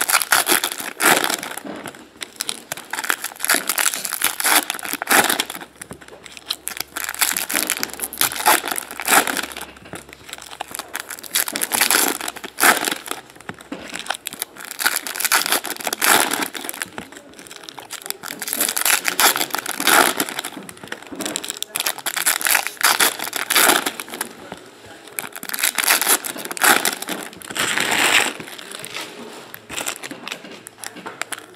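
Foil trading-card pack wrappers being torn open and crinkled by hand. The crackling comes in repeated bouts every few seconds.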